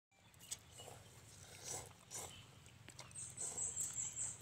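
Instant cup noodles being slurped and chewed by several eaters, in short noisy bursts, with a click about half a second in. Near the end comes a short run of high-pitched chirps, about four a second.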